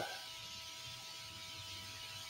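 Quiet pause in which only the recording's background is heard: a faint steady hiss with a thin, even electrical hum.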